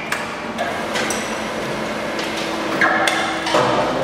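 Metal-on-metal hammer knocks in a workshop: about half a dozen irregular strikes on steel, one about a second in ringing briefly.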